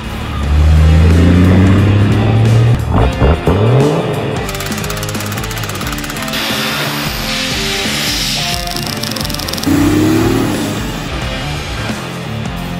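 Guitar rock music with a Toyota LandCruiser's engine revving over it in the first few seconds, its pitch rising, then a couple of quick rev sweeps; a shorter rising engine note comes about ten seconds in.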